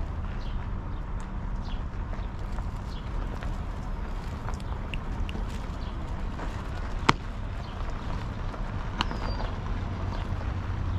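Outdoor ambience: a steady low rumble with faint scattered high sounds, and one sharp knock about seven seconds in, the loudest sound, with a lighter one about two seconds later.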